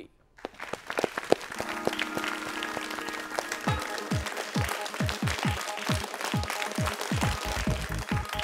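Audience applause, joined after about a second and a half by the quiz show's music sting, which from about halfway carries a rapid run of low, falling swoops.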